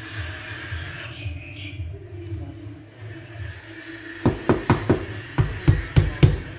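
Fist knocking on the 1.8 mm sheet-steel panel of a gate door: about four seconds in, four quick knocks, then after a short pause three more.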